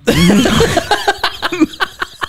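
Men laughing. A pitched, wavering laugh in the first second gives way to a string of short, breathy bursts.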